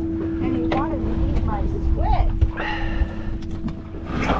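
A steady hum and a low wind rumble aboard a boat, with a few light clicks and knocks and brief voice sounds.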